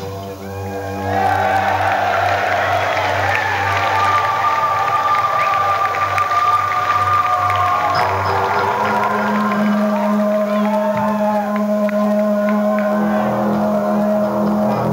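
Live band music at a song's close: the drum beat has stopped and long synthesizer tones hold, with a crowd cheering from about a second in.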